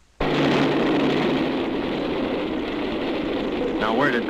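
Streamlined passenger train rushing past at close range, a loud steady rush of wheels and cars that cuts in suddenly out of near silence a moment in.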